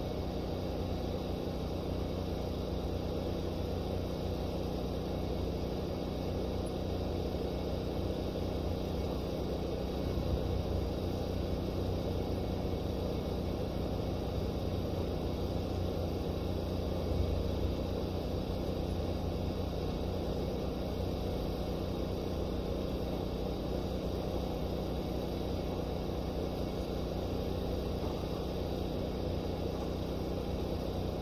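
A steady low mechanical rumble and hum that holds level throughout, with no sudden events.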